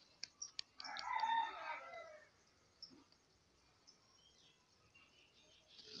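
A few faint taps, then an animal call lasting about a second and a half that falls in pitch at its end.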